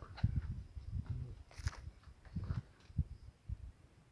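Irregular low thumps and rustles, several a second, with a brief hiss about a second and a half in: handling noise on a handheld camera's microphone as it pans.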